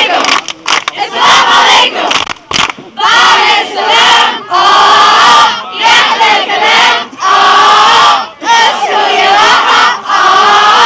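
A large group of teenagers chanting a song loudly in unison, in short phrases of about a second each with brief breaks between them.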